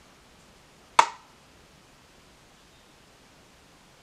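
A single sharp click or tap about a second in, dying away quickly, over quiet room tone.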